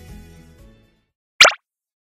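Background music fading out, then dead silence broken by a single short, sharp sound effect about one and a half seconds in.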